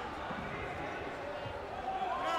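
Indoor sports-hall ambience: indistinct voices echoing around a large hall, with a couple of dull thuds.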